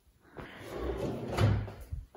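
A kitchen cabinet drawer sliding along its runners: a rumble that builds over about a second and ends in a knock about one and a half seconds in.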